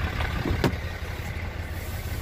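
Engine idling with a steady low rumble, and a single sharp click about two-thirds of a second in.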